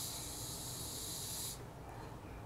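A steady high hiss of air drawn hard through the mouthpiece of a disposable vape pen, cutting off suddenly after about a second and a half. The pen gives no vapour, which the user takes to mean its battery was never charged.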